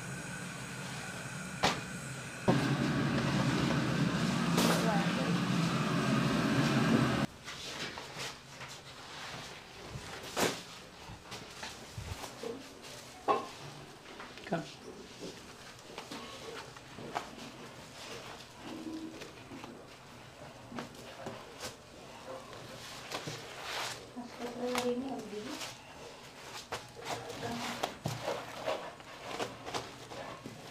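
A few seconds of background voices and kitchen noise that start and cut off abruptly. Then comes a quieter stretch of scattered faint clicks and rustles as flatbreads are handled on a crinkly foil sheet.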